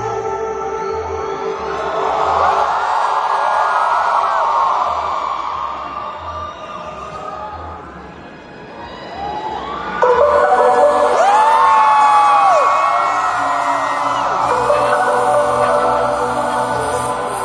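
Live concert music heard from within the crowd, with the crowd cheering and screaming. The sound sinks low about eight seconds in, then an electronic synth interlude cuts in suddenly about ten seconds in, with sustained tones and screams over it.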